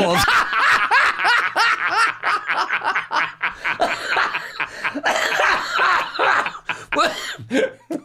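People laughing at the punchline of a joke, the laughter running on for several seconds and dying down near the end.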